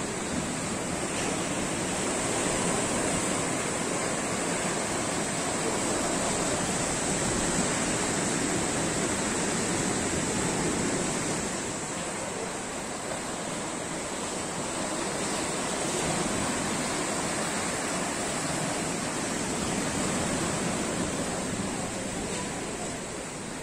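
Small sea waves breaking and washing up a sandy shore: a steady surf that swells and eases slowly in loudness.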